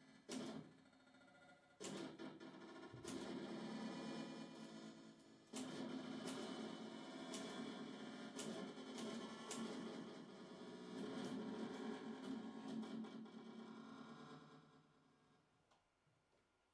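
Amplified typewriter played as an instrument through electronic effects: irregular sharp key strikes over a sustained, pitched processed tone, which fades away in the last second or two.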